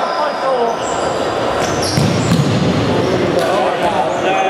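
Futsal game noise in a sports hall: the ball being kicked and bouncing, short high shoe squeaks on the wooden court, and players shouting, all echoing in the hall.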